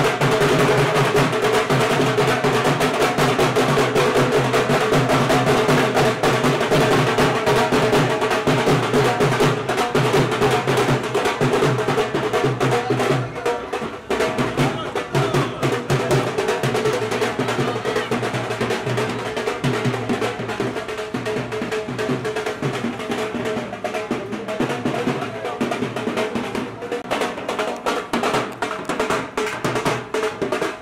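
Loud, drum-heavy band music with fast, rolling drum beats over a steady melody, with crowd voices mixed in. It gets somewhat quieter and thinner about fourteen seconds in.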